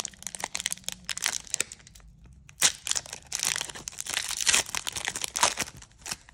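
Foil wrapper of a Mosaic Football trading-card pack being torn open and crinkled by hand: a rapid crackle of sharp crinkles, with a brief pause about two seconds in.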